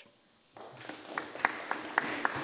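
Members applauding in a parliamentary chamber at the end of a speech: the clapping starts about half a second in and grows, with individual sharp claps standing out.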